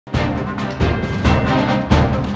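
Television news-bulletin theme music, starting at once, with heavy accented hits several times in two seconds.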